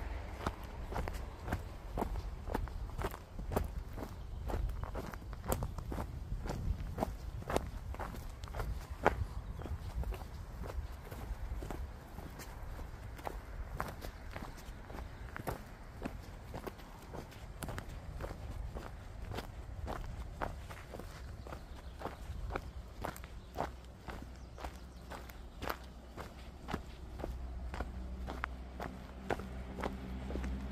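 A hiker's footsteps on a trail at a steady walking pace, about two steps a second, over a low rumble.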